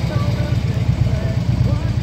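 Harley-Davidson Electra Glide Ultra Limited's 103 cubic inch V-twin idling steadily through its Vance & Hines exhaust.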